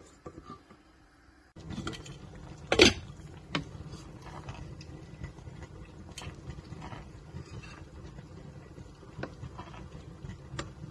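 Wooden spatula stirring thick okra sauce in a stainless steel pot, scraping and knocking against the pot. It starts after a quiet second and a half; the sharpest knock comes about three seconds in, with a few lighter ones after. The sauce tends to stick to the bottom of the pan.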